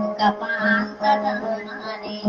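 Dayunday music: a voice singing over a steady held drone.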